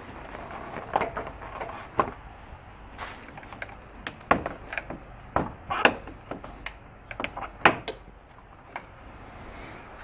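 Small plastic push-pin retainer tabs on a Jeep Wrangler JK grille being pried and pulled out one after another: irregular sharp plastic clicks and snaps with handling rustle between them.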